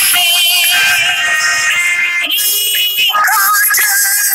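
Children's educational song: a singing voice over backing music, singing the lines "who wanted a fish" and "he caught a little".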